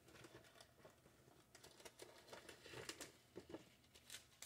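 Faint rustling with scattered light clicks and taps from small items being handled on a work table.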